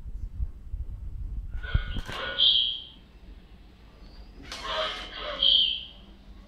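Remote-control Iron Man toy robot playing electronic sound effects from its built-in speaker in two bursts, about two seconds in and again near the end, with a click just before the first.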